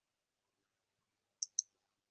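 Two short, faint clicks in quick succession about a second and a half in, amid otherwise dead silence on the call line.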